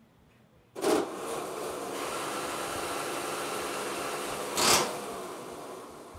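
Electric motors of a FIRST competition robot running with a steady whir. The sound starts suddenly with a loud burst about a second in, has a second loud burst near the end, and then fades.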